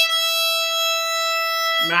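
Violin's open E string bowed in one long, steady note, sounded as the reference pitch for tuning the E string. Speech begins right at the end.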